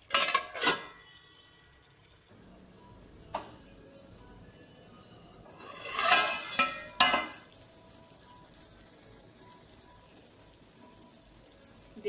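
Metal lid clattering and ringing against a kadhai as it is set on and handled, in two bouts: one right at the start and another about six to seven seconds in, with a single sharp click between. Underneath, a faint steady sizzle of the potatoes and peas cooking under the lid.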